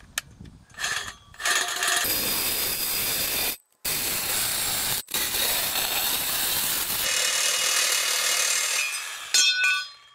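Cordless reciprocating saw cutting through a galvanized steel post. Two short starts are followed by a long, steady cut of the blade sawing through the metal, briefly broken twice, with a short ringing near the end.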